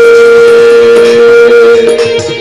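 A male voice holds one long, steady sung note of a Rajasthani devotional bhajan, with the drumming paused; the note ends just before the close.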